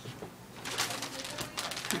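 Paper rustling and crackling as a greeting card and its envelope are handled. It is quiet at first, then a quick run of short crackles follows from about half a second in.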